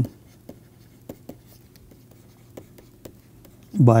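Stylus writing on a pen tablet: a scatter of faint, irregular taps and light scratches as words are handwritten, over a faint steady low hum. A man's voice starts near the end.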